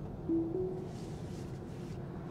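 Steady road and tyre noise inside a 2022 Tesla Model 3's cabin while driving, with a short low steady tone about a third of a second in.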